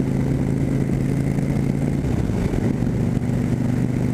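Cruiser motorcycle's engine running at a steady cruising speed, heard from the rider's seat, with a slight change in its note about halfway through.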